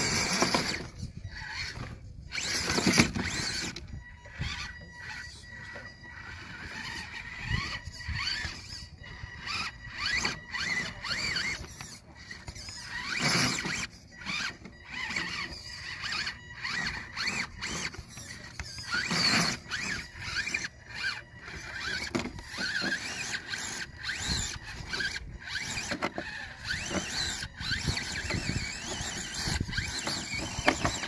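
Electric motor and gear train of a scale RC rock crawler whining as it climbs rock, the pitch wavering up and down as the throttle is worked. Frequent clicks and scrapes come from the tyres and chassis on the rock.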